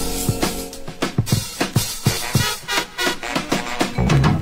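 Music: a funk drum break, the drum kit playing almost alone in a steady groove of kick and snare hits.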